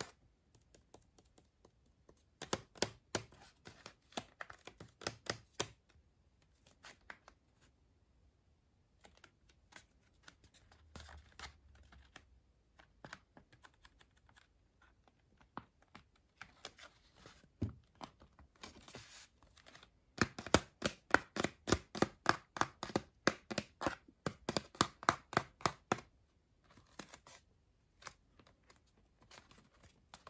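Fingernails tapping and scratching on the Barbie Pop Reveal packaging, with the package being handled. The taps come in quick runs of sharp clicks, loudest at about two to six seconds in and again from about twenty seconds in, with softer scratching between.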